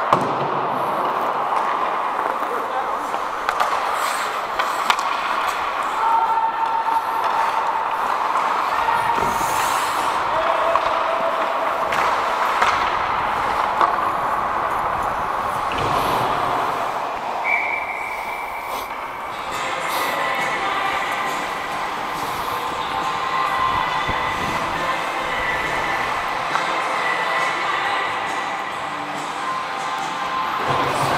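Ice hockey played close by: skate blades scraping the ice, sticks and puck clacking, with scattered sharp knocks of the puck or players hitting the boards. Players call out indistinctly throughout.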